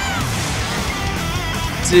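Thrash metal band playing at a steady level: distorted electric guitars, bass and drums.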